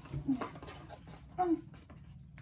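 A person's voice making two short sounds, about a second apart.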